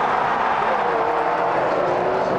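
Formula 1 cars' turbocharged V6 hybrid engines running at speed on track, a steady rush of noise with engine notes that shift slightly in pitch.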